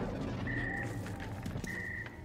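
Electronic alarm beeping twice: a steady high beep about a third of a second long, repeating a little over once a second, over a low drone. It is the alert that a motion sensor has been triggered.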